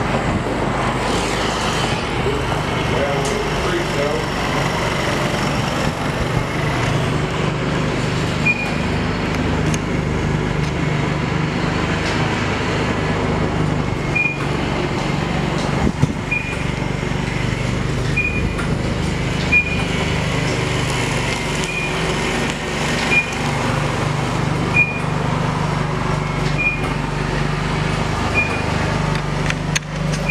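Short, high electronic beeps from a self-serve car wash coin box, repeating about every one and a half to two seconds once they start, over a steady low hum.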